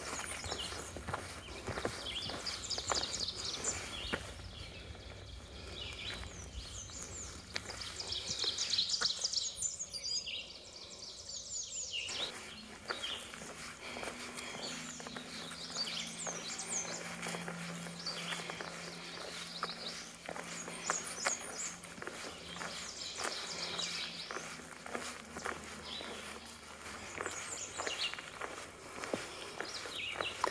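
Several songbirds singing and chirping in spring woodland, over footsteps on a dirt trail. A low steady drone runs for several seconds in the middle.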